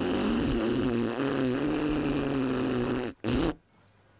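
A cartoon character blowing a long, wet raspberry with the tongue out between the lips: a fart-like buzz with a wavering low pitch for about three seconds, then a short second burst.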